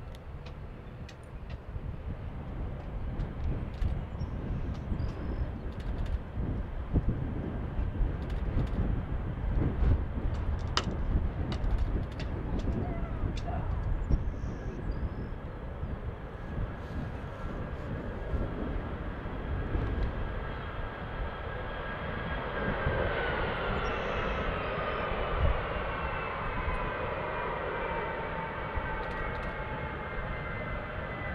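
C-17 Globemaster III's four Pratt & Whitney F117 turbofan engines running as the jet taxis and turns on the runway. A steady low rumble carries through, and about two-thirds of the way in a whine grows louder and slowly falls in pitch.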